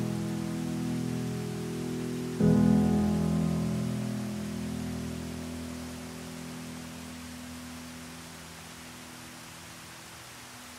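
Slow solo piano: a held chord fades, then a new chord is struck about two and a half seconds in and left to ring and die away slowly. A steady hiss of rushing water runs underneath.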